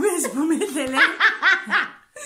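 Women laughing, with a quick run of high-pitched laughs in the second half.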